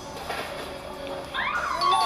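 Low background music, then from about one and a half seconds in a high-pitched voice sliding up and down in pitch.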